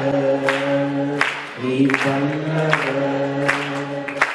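A man singing a slow devotional song into a microphone, holding long notes of about a second or more each, with short breaks between phrases.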